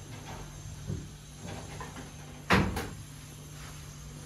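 Metal wardrobe (almirah) door being handled: a soft knock about a second in, then the door shut with a sharp metallic bang about two and a half seconds in, ringing briefly.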